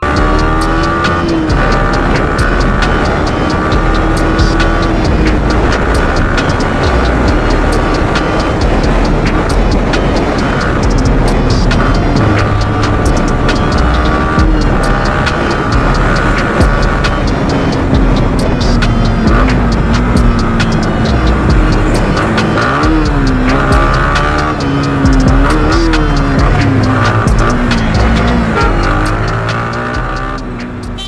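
A Yamaha R15 V3 motorcycle riding at road speed, its engine running with wind noise. The engine pitch drifts slowly, then rises and falls several times with the throttle near the end. Background music plays along with it and fades out at the end.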